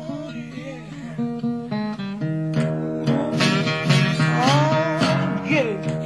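Blues guitar playing in a band recording, with picked notes and a few notes that slide up and down in pitch, growing busier and louder a couple of seconds in.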